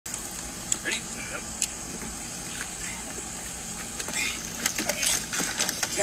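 Steady hum of a vehicle engine running, with two sharp clicks in the first couple of seconds and muffled voices that grow busier near the end, while a metal catch pole is worked at a car grille.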